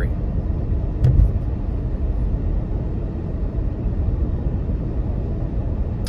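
Steady low rumble of a car driving, engine and road noise heard from inside the cabin, with one brief short sound about a second in.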